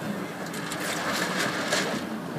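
Motorboat engine running steadily under a rush of wind and water noise, the rush louder in the second half.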